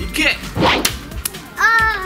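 A throwing star (shuriken) thrown by hand, a short swish about half a second in with a sharp click just after it. Near the end a voice lets out a disappointed 'aah' at a miss.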